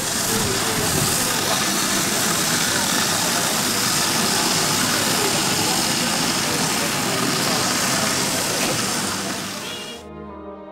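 A vehicle engine idling, with people talking around it; the sound fades out near the end.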